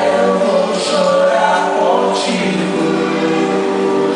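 Male voices singing a worship song together over acoustic guitar, holding long notes, sung into microphones.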